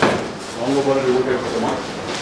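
Voices talking in a small office, with a sharp knock right at the start.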